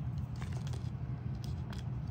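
A small clear plastic bag being handled, giving a few faint crinkles and light clicks over a low steady room hum.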